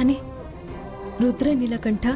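Crickets chirping, a short high chirp repeating about every half second, over background music.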